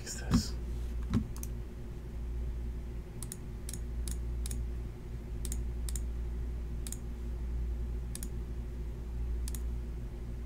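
Faint, sharp clicks, about ten of them, scattered irregularly from about three seconds in, over a steady low electrical hum. Two brief low sounds come in the first second and a bit.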